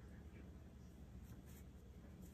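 Near silence: a low steady hum with a few faint, brief rustles of fingers rubbing and parting locs of hair, about half a second in and again about a second and a half in.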